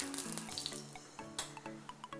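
Oil sizzling in a hot pan as a soft, fading hiss, with a sharp click about one and a half seconds in. Background music with held notes plays underneath.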